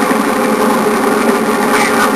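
Steady engine and road noise inside the cab of a moving vehicle, a continuous hum without change.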